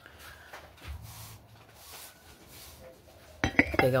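Faint handling sounds, then an enamel coffee mug set down on a table with a sharp clink about three and a half seconds in.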